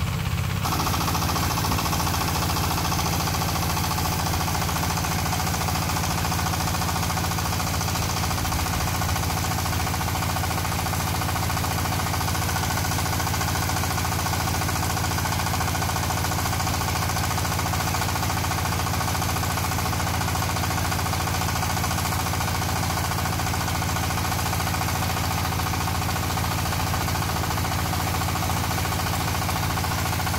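Walking tractor's diesel engine running steadily with a knocking chug as it drives an orchard power sprayer during pesticide spraying.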